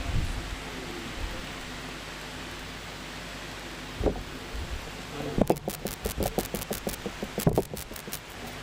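Steady room hiss with close handling noise: a single thump about four seconds in, then a quick run of irregular knocks and bumps in the last few seconds as a prayer book and the microphone area are handled and people get up.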